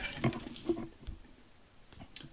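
A few faint knocks and handling sounds as a black iron pipe flange is lifted off a cedar stump, then near silence.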